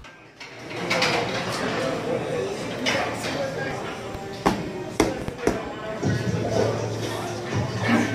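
Busy gym weight room: people talking and music playing over the room's speakers, with a few sharp clanks of weights, several close together around the middle.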